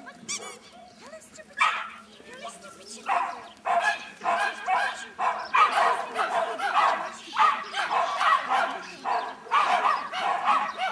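Dog barking and yelping excitedly in quick, repeated bursts, starting about one and a half seconds in and keeping up almost without a break.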